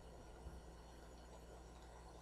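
Near silence: faint steady low hum and hiss of the recording, between the narrator's sentences.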